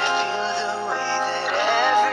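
Male voice singing a slow, held vocal line with a rising glide near the end, over soft backing music.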